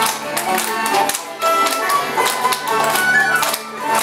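Romanian folk tune played on acoustic guitar and a plucked string instrument, with a small wind instrument carrying a bright melody. Hand clapping keeps the beat with sharp, regular claps throughout.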